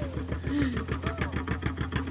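Inboard engine of a wooden local fishing boat running offshore: a fast, even chugging over a steady low hum.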